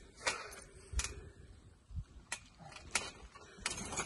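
Trampoline mat and springs knocking and clicking under someone bouncing, about one thump a second, as he builds up to a handspring.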